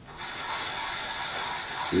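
A 300-grit diamond honing card rubbed in light circular strokes over the bevel of a steel lathe turning tool, wetted with lapping fluid. The steady scratchy rasping starts just after the beginning.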